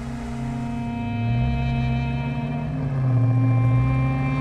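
Background film score: a sustained low drone with held tones above it, its bass note shifting up about a second in and again near three seconds.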